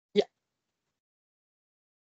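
A single brief spoken 'yeah' over a video-call line, lasting a fraction of a second just after the start; the rest is dead digital silence.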